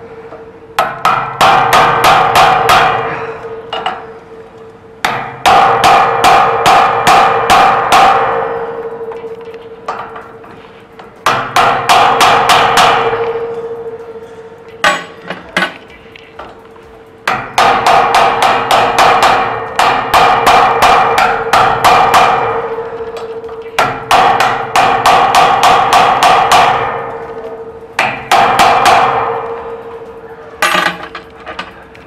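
A metal hammer repeatedly striking a brass magnetic cylinder protector on a steel door lock, in a forced-entry test. The blows come in bursts of several a second, each burst lasting a few seconds with short pauses between, and every blow leaves a metallic ring.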